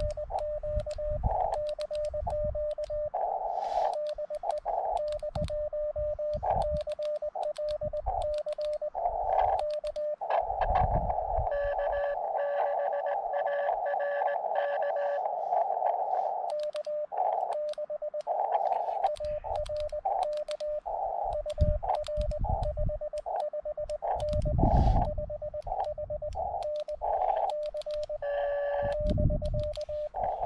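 Morse code (CW) from a portable ham radio transceiver: a tone of one steady pitch keyed on and off in dots and dashes. It is a CW contact, a CQ call answered by another station with an exchange of 559 signal reports. There is a stretch of receiver hiss around the tone in the middle, and low thumps underneath.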